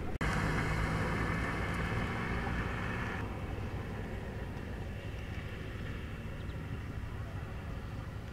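Road traffic: a car passing with a steady rush of tyre and engine noise. About three seconds in, the sound drops suddenly to quieter, more distant traffic noise.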